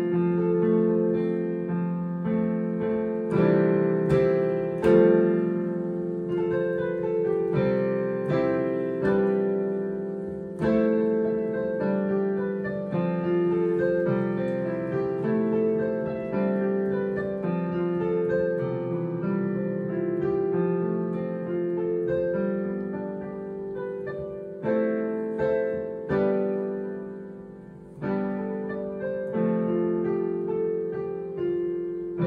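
Digital piano improvising over a four-chord progression in C major: sustained chords with melody notes on top, changing about every second, swelling to a louder chord about five seconds in and dipping briefly near the end before new chords come in.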